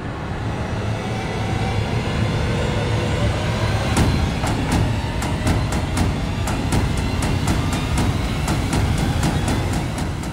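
Dramatic background score: a dense low rumble, joined about four seconds in by a steady ticking beat of about three to four ticks a second.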